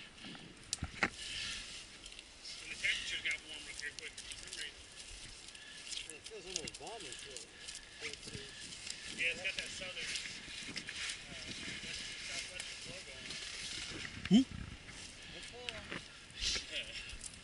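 Rustling and scattered clicks of people moving about and handling mountain bikes on dry leaf litter, with faint indistinct voices in the background. A short, louder voice sound comes about fourteen seconds in.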